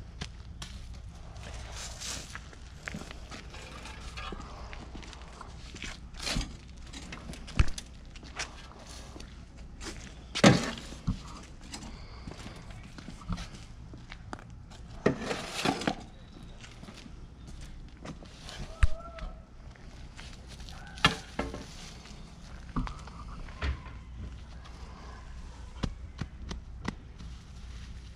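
Scattered scrapes and knocks of a shovel scooping soil from a wheelbarrow and dumping it into a planting hole, mixed with footsteps and gloved hands pressing loose dirt down. The loudest knocks come about ten and fifteen seconds in.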